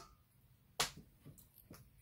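A small magnetic button-cover needle minder being handled and dropped: one sharp click about a second in, then a few faint ticks.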